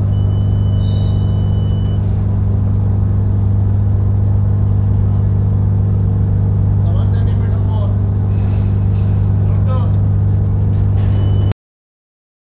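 Steady, loud, deep hum of ship's engine machinery alongside a passenger ship during bunkering. It cuts off suddenly near the end.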